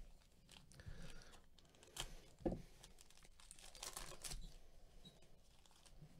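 Faint tearing and crinkling of a foil trading-card pack wrapper being opened by plastic-gloved hands, in short irregular crackles. The sharpest crackle comes about two and a half seconds in, and a longer rustle follows around four seconds in.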